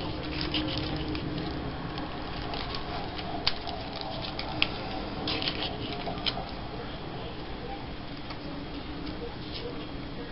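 Paper and cardstock rustling and crinkling as hands handle and press small paper embellishments onto a paper tag, with a couple of sharp little ticks around the middle. The handling is busiest in the first half and quieter later.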